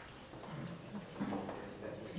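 Footsteps on a tiled corridor floor, with brief low voices murmuring.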